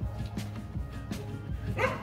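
Dhol drums struck in a loose, uneven beat, with a dog's short yelping bark a little before the end.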